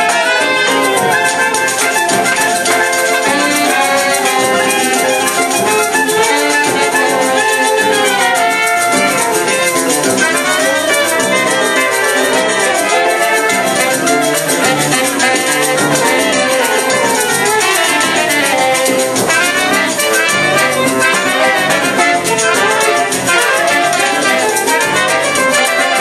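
Small choro ensemble playing a lively tune: trumpet, saxophone and clarinet on the melody, with a metal shaker (ganzá) keeping a steady rhythm.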